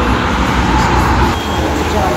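Steady outdoor street noise with a low rumble, like road traffic, under faint voices.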